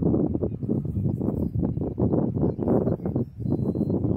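Loud, irregular rumbling and crackling noise on the microphone, rough and uneven throughout.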